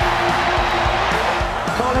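Background music with a steady beat, over the noise of a stadium crowd; a commentator's voice comes in near the end.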